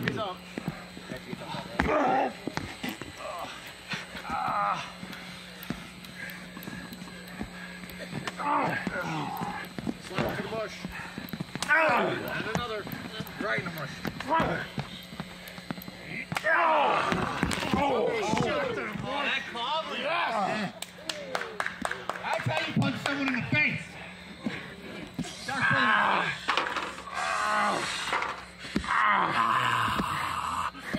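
Men shouting, yelling and groaning in bursts, with a few sharp knocks about twelve seconds in and again around seventeen seconds, over a faint steady hum.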